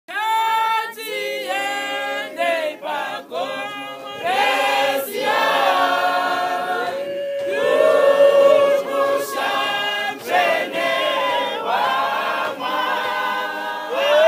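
Mixed choir of women and men singing a Shona gospel hymn a cappella, line by line with short breaks between phrases.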